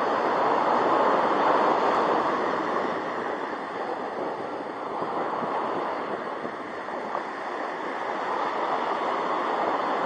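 Ocean surf washing up a sandy beach: a steady rushing that is strongest in the first couple of seconds, eases in the middle and builds again near the end as a wave washes in.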